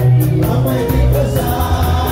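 Live sungura band playing: electric guitars and bass over a drum kit keeping an even cymbal beat of about four strokes a second, with a male lead singer.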